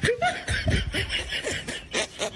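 Laughter in a rapid run of short bursts.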